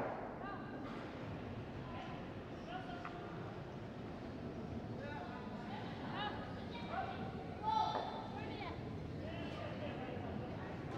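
Curling rink ambience with faint, echoing voices of players calling across the ice, a few short calls, the clearest just before the end.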